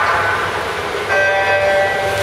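Electronic swim-start signal: a steady multi-tone beep starts sharply about a second in and lasts about a second, sending the swimmers off the blocks.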